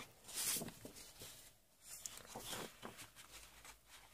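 Sheets of patterned designer paper rustling softly as they are handled and turned over, with a short swish about half a second in and another around two and a half seconds.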